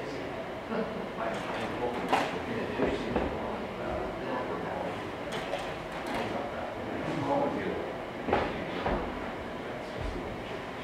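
Indistinct low voices of an audience in a room, with several sharp clicks and knocks scattered through it, including a slide projector changing slides around the middle.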